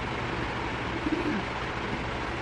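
Steady background hiss, with a faint short low call about a second in.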